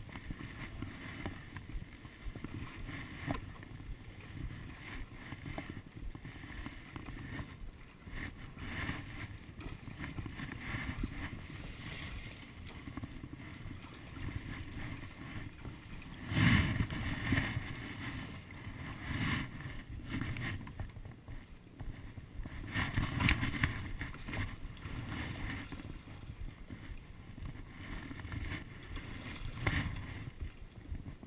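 Stand-up paddleboard paddle strokes through the water, with splashing and water lapping around the board. The loudest splashes come about halfway through and again a few seconds later.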